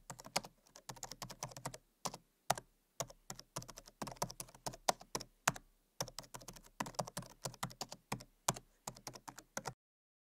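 Computer keyboard typing, used as a sound effect: quiet, quick, irregular key clicks, several a second, that stop just before the end.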